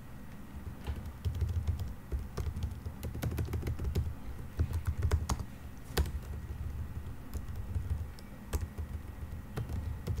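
Typing on a computer keyboard: irregular runs of keystroke clicks with short pauses between them.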